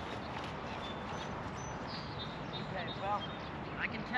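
Steady light wind noise over an open field, with a few faint high chirps about a second and a half in and faint short bits of voice near the end.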